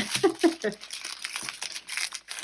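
Small plastic bags of square diamond-painting drills crinkling as they are picked up and handled, in a run of quick crinkles after the first half-second.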